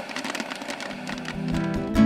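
Popcorn popping in a metal pot, a rapid scatter of small crackling pops. Guitar music fades in over the second half.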